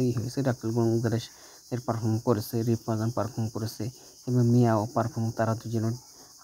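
A man talking, with a steady high-pitched hiss underneath.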